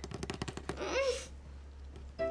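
A fast rattle of clicks, about twenty a second, lasting under a second, followed about a second in by a brief rising-and-falling high vocal sound.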